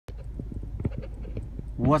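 A low steady rumble with faint scattered clicks, then a man starts speaking near the end.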